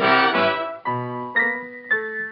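Swing-era dance band playing an instrumental fox trot passage, piano to the fore, from a 1940 Victor 78 rpm shellac record. The full band sounds for under a second, then thins to a lighter passage of held notes.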